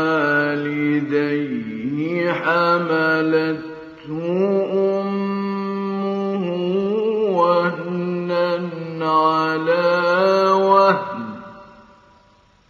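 A male Qur'an reciter chanting in the ornamented mujawwad style: long held notes with melismatic turns on one sustained phrase. There is a brief pause for breath about four seconds in, and the phrase ends and fades out about a second before the end.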